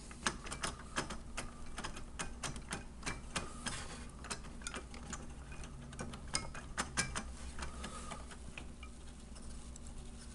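Irregular plastic clicks and taps from a CPU cooler's fan shroud and heatsink being handled and worked by hand, thinning out after about eight seconds. A steady low hum sits underneath.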